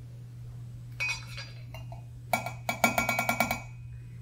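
Pineapple juice glugging out of a glass bottle into a small measuring cup: a light clink about a second in, then a quick run of ringing glugs lasting about a second. A steady low electrical hum runs underneath.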